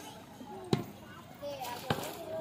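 Background chatter of several people's voices, with two sharp knocks about a second apart.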